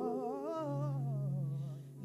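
Worship song singing trailing off at the end of a phrase, the voices wavering with vibrato and fading, over a low steady held note that starts about half a second in. The sound dips near the end before the next line begins.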